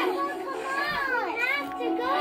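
High-pitched animated character voices calling out and chattering without clear words, from a film soundtrack, over a steady background tone.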